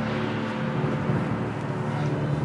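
A steady, low droning hum made of a few held tones.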